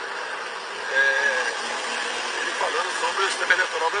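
A man's drawn-out, hesitant speech over a steady noisy background, played back through a phone's speaker.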